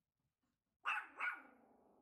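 A tiny Yorkshire terrier barking twice, about a second in, the two barks less than half a second apart, each trailing off with a short fading tail.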